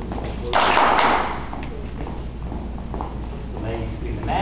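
Dancers' shoes stepping and shuffling on a hall floor, echoing in the large room, with a loud scuffing rush of sound about half a second in. Faint voices in the room.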